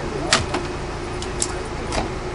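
A few short, sharp clicks and clacks, the loudest about a third of a second in, as a car's rear number plate is handled and worked loose from its holder. Steady background noise with a faint hum runs underneath.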